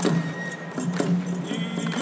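Japanese folk lion-dance (shishimai) accompaniment: a drum struck about once a second, with lighter clacks between, over a steady low band and a faint high held note.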